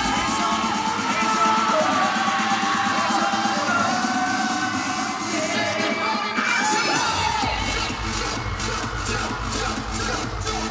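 A concert audience screaming and cheering over music from the venue's sound system. A heavy bass beat comes in about seven seconds in as the next song starts.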